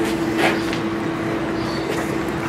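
Steady hum and rushing noise inside a car, with a short knock about half a second in.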